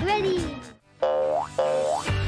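A short falling vocal exclamation fades out. After a brief hush come two quick cartoon boing sound effects, each sliding sharply upward in pitch.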